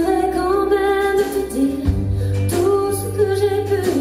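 A woman singing a slow French ballad live in long held notes, accompanying herself on a keyboard, which moves to a new chord about two seconds in.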